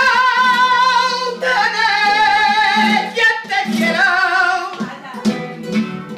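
Male flamenco singer holding a long, wavering melismatic cry with no clear words, accompanied by a flamenco guitar. The voice drops out about five seconds in, leaving the guitar playing on.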